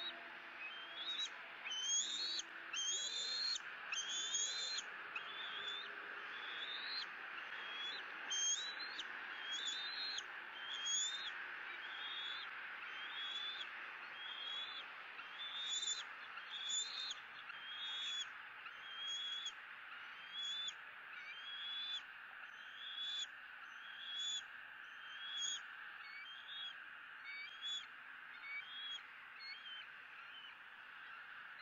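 Bald eaglet giving a long series of high, rising begging calls, about one a second, a little weaker near the end, over a steady background hiss.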